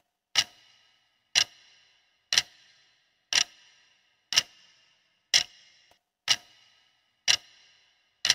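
Clock-tick sound effect of a countdown timer: one sharp tick a second, eight ticks, each with a short ringing tail, counting down the seconds left to answer.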